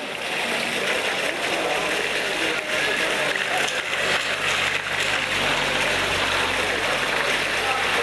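Heavy rain pouring down and splashing on wet tarmac and puddles, a steady hiss that fades in at the start.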